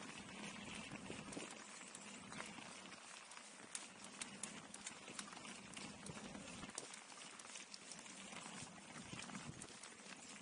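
Mountain bike rolling down a dirt forest trail: a faint hiss of tyres on dirt with irregular light clicks and rattles from the bike.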